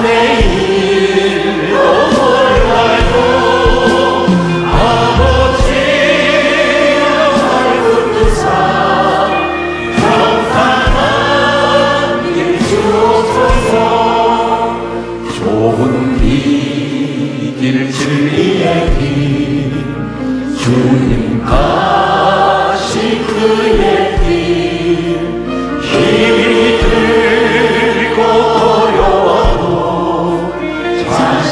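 A church praise team singing a Korean contemporary worship song together, with band accompaniment underneath.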